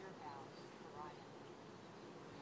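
Faint voice speaking in two short snatches, barely above the background.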